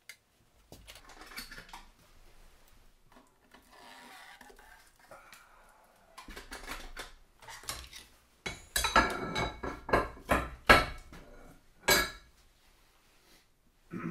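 Metal quench plates, tongs and a foil heat-treat pouch clanking on a steel-topped table as a red-hot blade is plate-quenched from the kiln: soft handling noises at first, then a run of loud sharp metal clanks from about two-thirds of the way in.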